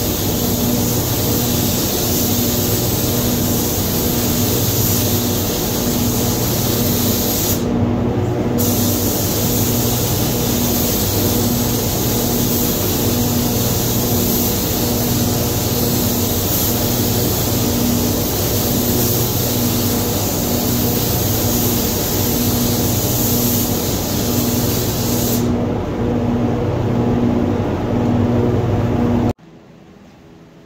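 Compressed-air spray gun hissing as it sprays base coat, over the steady hum and rush of the paint booth's airflow. The high hiss of the gun breaks off briefly about eight seconds in and stops a few seconds before the end, and then all the sound drops away abruptly.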